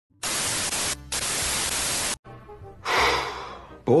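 Television static: a loud, even hiss for about two seconds, dipping briefly about a second in and then cutting off abruptly. After it come faint music and a short breathy rush of noise.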